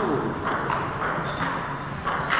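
Celluloid-style table tennis balls clicking off bats and tables in a rally, short sharp hits about every half second, with voices in the hall behind them.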